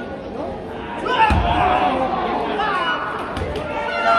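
A heavy thud as a wrestler's body is slammed onto the wrestling ring about a second in, then a second, lighter thud near the end, over spectators shouting and chattering.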